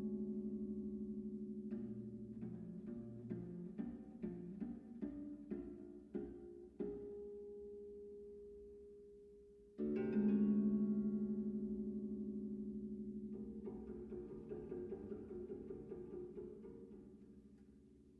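Bass zither played solo. A low chord rings and slowly dies away, then comes a run of quick plucked notes over a held low note and a single ringing note. About ten seconds in another strong chord rings out, followed by a fast fluttering tremolo that fades away near the end.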